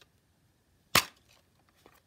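A plastic DVD keep case snapping open, with a single sharp click about a second in as its clasp releases.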